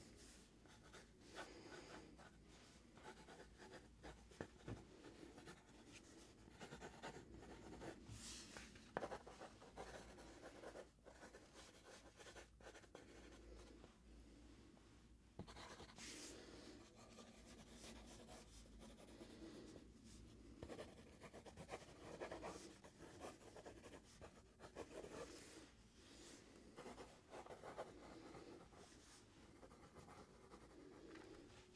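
Pencil sketching on a paper pad: quiet, irregular scratching strokes with short pauses, and one sharper tap about nine seconds in.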